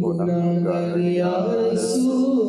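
A man's voice reciting a naat, an Islamic devotional poem, unaccompanied into a microphone, holding long notes that step up and down in pitch.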